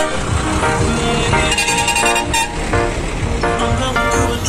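Background music over trucks driving past in a slow convoy, with a truck's horn sounding for about a second near the middle.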